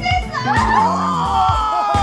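A few people whooping in one long excited cry from about half a second in, its pitch sagging slightly: cheering at a lucky result. Background music runs underneath.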